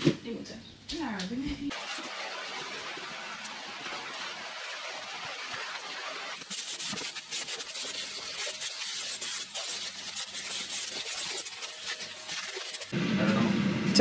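Canister vacuum cleaner running steadily over a floor. From about halfway through it crackles and rattles as small loom bands and beads are sucked up.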